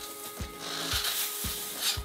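Plastic sheeting crinkling and rustling in repeated handfuls as it is pulled and smoothed into place around an air conditioner, over faint background music.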